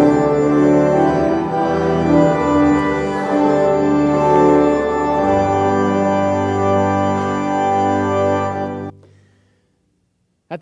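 Church organ playing the closing chords of a hymn in long held chords, the bass moving to a lower final chord about halfway through. The final chord is released about nine seconds in and dies away within half a second.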